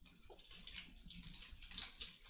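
Faint, irregular crinkling and rustling of plastic communion packaging as it is handled and peeled open in the hands.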